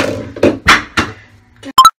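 A spoken word, then near the end one very brief, very loud sharp clink with a ringing tone, like a hard object knocked against something.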